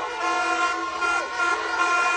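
Several plastic stadium horns (vuvuzela-type) blown together by a protesting crowd, in long, steady blasts on a few pitches at once.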